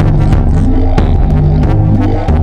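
Loud live electronic music: deep, throbbing bass drones under shifting pitched synth notes, cut by sharp percussive clicks.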